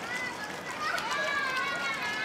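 Children's voices calling out, several high voices overlapping for most of the two seconds, over a steady background hiss.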